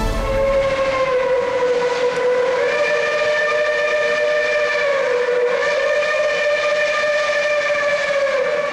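Steam whistle blowing one long held blast, a rich chord whose tone shifts slightly about two and a half seconds in and again past the middle.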